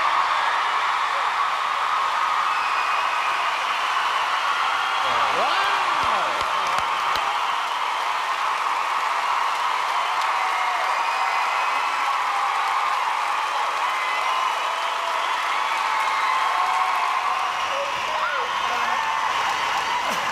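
Studio audience applauding and cheering steadily, with whoops and shouts over the clapping.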